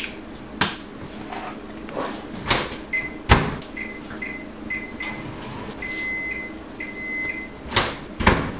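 Microwave oven being worked: a door shuts with a thump and a few clicks, then a run of short keypad beeps and two longer beeps of the same pitch.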